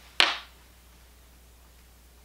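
A single short, sharp sound about a quarter second in that dies away quickly, followed by quiet room tone.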